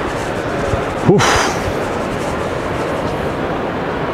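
Steady background noise of a large, busy indoor exhibition hall, with visitors' crowd murmur.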